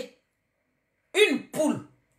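Dead silence for about a second, then a woman's voice speaking two short syllables.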